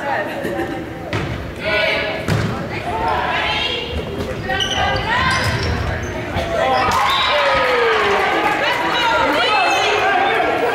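Indoor volleyball rally in a gym that echoes: sharp slaps of the ball, with girls and spectators shouting. The yelling and cheering grow louder and fuller about two-thirds of the way in, as the point ends.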